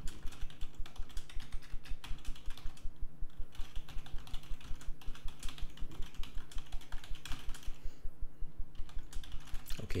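Computer keyboard typing: fast, even keystrokes, several a second, as a sentence is typed out, with brief pauses about three and eight seconds in.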